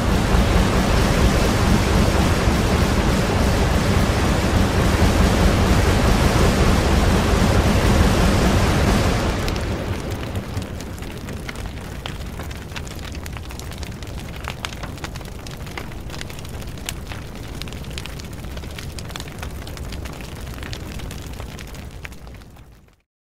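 Sound effects for a lightning strike and thunder: a loud, dense crackling rumble. After about nine seconds it eases into a quieter crackle of burning flames, with many small scattered pops.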